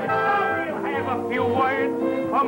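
Big band playing lively dance music, with swooping high notes in the second half.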